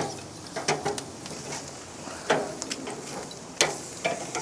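Chicken sizzling on a hot grill grate over lump charcoal, with about five sharp clicks and clanks of metal tongs against the grate as the pieces are picked up and moved.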